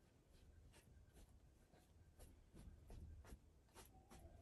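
Faint brush strokes of oil paint on a stretched canvas: a run of soft taps and scrapes, about three a second.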